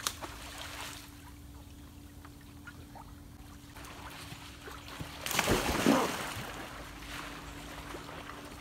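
A person jumping into a swimming pool: one big splash about five and a half seconds in, lasting under a second, over faint water sounds and a steady low hum.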